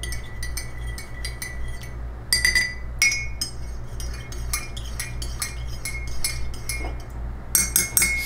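A spoon stirring coffee in a mug, clinking against the mug's sides several times a second, each clink ringing briefly; a few clinks near the middle and near the end are louder.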